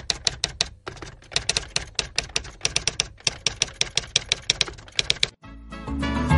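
Typewriter sound effect: quick runs of sharp key clacks, several a second, with short breaks, stopping a little past five seconds in.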